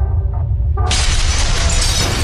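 Intro sound effect of a wall shattering over deep, rumbling music: a sudden loud crash of breaking debris bursts in a little under a second in and carries on, over a steady bass drone.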